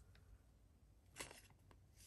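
Near silence: room tone, with one faint, short rustle a little over a second in from a trading card being handled against a clear plastic sleeve.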